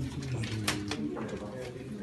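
Indistinct low voices murmuring in a small room while ballot papers are unfolded and handled, with one short sharp rustle about two-thirds of a second in.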